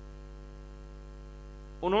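Steady electrical mains hum with a ladder of evenly spaced overtones, unchanging in level through the pause; a man's speaking voice comes back in near the end.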